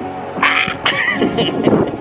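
A man laughing, with a couple of short gusts of wind buffeting the microphone.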